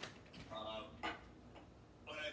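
Two sharp clicks, one right at the start and one about a second in, over faint speech.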